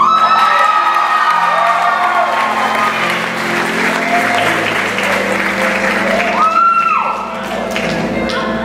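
Audience applauding over background music.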